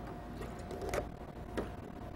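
A few light clicks and taps of bar glassware as lemon juice is measured into a highball glass, over a faint steady hum.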